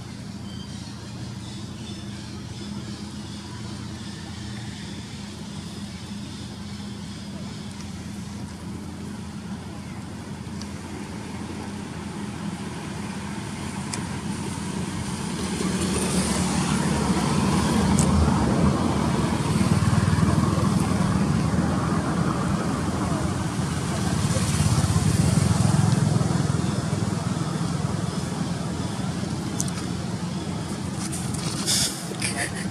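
Outdoor background of traffic: a steady low rumble that grows louder in the second half, swelling twice like vehicles passing, with indistinct voices.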